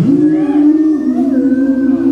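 A man's voice singing one long held note into a vocal microphone. It slides up into the note at the start and drops slightly lower about a second in.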